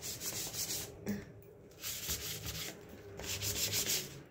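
Sticky lint roller rolled over a T-shirt in about three strokes with short breaks between, picking cat hair off the fabric.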